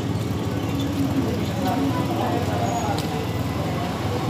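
A steady low background rumble with faint voices talking in the distance.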